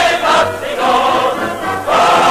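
Large choir singing, loud and sustained, swelling to a fuller held chord near the end.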